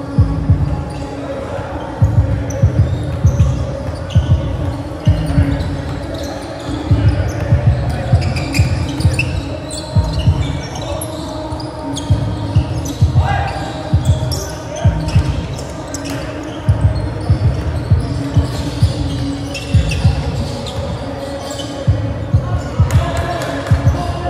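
A basketball bouncing on a gym floor during a game, repeated deep thumps that echo in a large hall, with players' voices.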